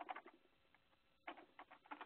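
Near silence: quiet room tone with a few faint, short soft noises near the start and again in the second half.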